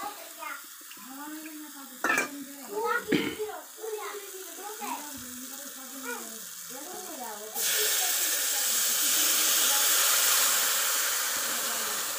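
Wet masala paste hitting hot oil in a kadhai: a loud sizzle starts suddenly about two-thirds of the way in and holds steady. Before it, only faint voices are heard in the background.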